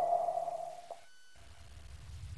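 A steady mid-pitched tone, with a fainter higher tone above it, fades away over the first second. A faint low rumble follows.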